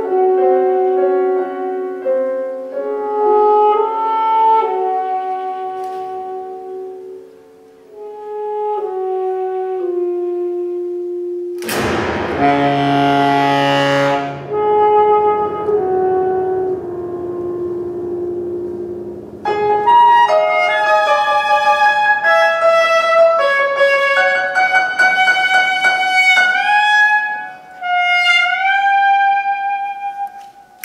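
Saxophone and grand piano playing a contemporary piece built on long, overlapping held tones. About twelve seconds in comes a loud sudden attack that rings for a couple of seconds, and from about twenty seconds a denser passage follows, with notes bending upward near the end.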